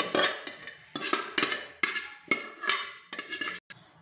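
A metal spoon knocking and scraping against a metal cooking pot as shredded chicken is tipped out of it, about seven clanks, each ringing briefly.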